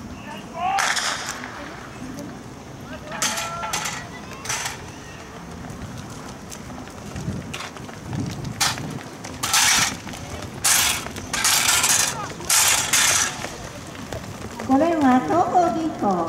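A starting gun fires about half a second in and sets off a hurdles race. Spectators then shout and cheer in short bursts while the race is run, and a voice rises near the end.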